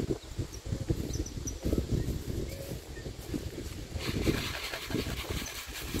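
Wind rumbling on the microphone, with footsteps on dry grass. From about four seconds in, a hiss of cracked corn being poured from a plastic jar onto bare soil.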